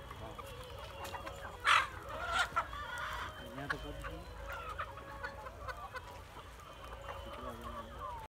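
A large flock of free-range chickens clucking. A loud call rises above the flock about two seconds in, with a second strong call shortly after.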